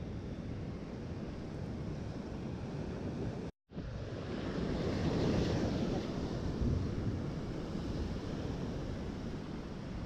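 Ocean surf washing and breaking against shore rocks, a steady rushing noise mixed with wind buffeting the microphone, swelling louder about five seconds in. The audio cuts out completely for a moment about three and a half seconds in.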